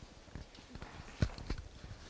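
Faint room tone with a few soft knocks, the loudest a little over a second in and a second one shortly after.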